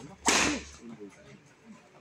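Badminton racquet smashing a shuttlecock: one sharp crack with a swish, about a quarter second in.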